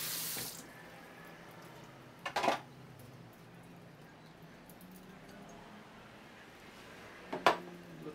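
Kitchen faucet running into a stainless steel sink as a juice-press cloth bag is rinsed under it, shut off about half a second in. Then two sharp knocks, one a couple of seconds in and a louder one near the end.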